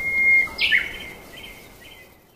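Bird song: a held whistle, then a sharp falling chirp about half a second in and a few short whistled notes, over a steady hiss of background noise.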